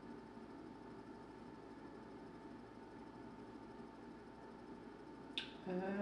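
Faint room tone with a steady low hum. A short sharp click comes shortly before the end, followed by the start of a spoken "um".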